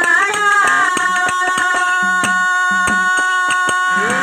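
Harmonium holding a steady chord under a regular drum beat, with a sung note trailing off in the first second.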